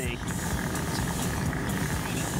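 Steady low rumbling background noise with no clear rhythm or tone.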